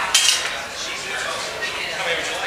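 Metal serving utensils clinking against stainless-steel chafing dishes at a buffet, a cluster of sharp clinks in the first half second and then lighter scattered ones, over background chatter of a crowd.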